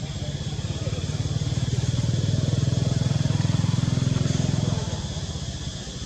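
A vehicle engine running at a low, steady pitch, growing louder over the first two seconds and fading away about five seconds in, as it passes close by.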